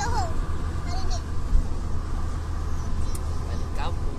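Steady low hum of engine and tyre noise inside a moving car's cabin.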